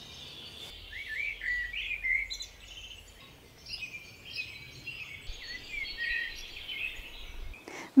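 Garden birds singing, a busy run of short chirps and quick up-and-down calls, over a faint low background hum.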